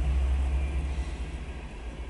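Freight train rolling past: the low rumble of the GE ES44AC diesel distributed-power locomotive that has just gone by, fading after about a second, with the following tank cars rolling on the rails. Heard from inside a car.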